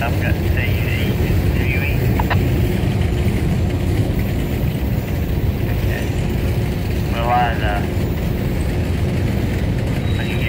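Freight train's cars rolling slowly past: a steady low rumble of steel wheels on rail. A few brief higher-pitched warbles sound over it near the start and again about seven seconds in.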